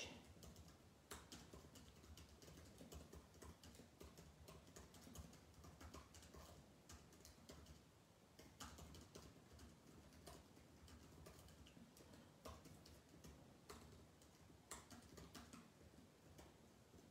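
Faint typing on a keyboard: an irregular stream of small key clicks with short pauses between bursts.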